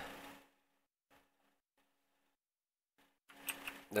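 Near silence, with three faint, brief noises over a low hum in the middle. A man's voice trails off at the start and starts again near the end.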